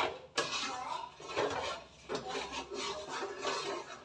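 A metal spoon scraping and clinking against a steel cooking pot as the food inside is stirred, with two sharp clinks at the very start.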